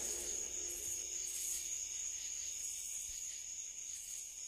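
Crickets chirping, a steady high trill with a faint pulse, as the song ends, over the dying tail of the band's last note.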